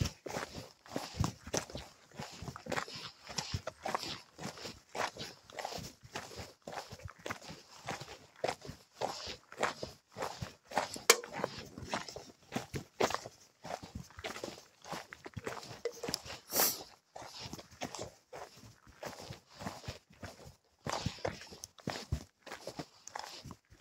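Footsteps of a hiker walking down a mountain trail, an uneven run of short scuffs and steps with small gaps between them.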